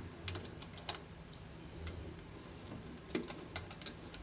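Light clicks and taps of metal RCA cable plugs being handled against the back panel of a power amplifier: a few in the first second and a quick cluster a little after three seconds in.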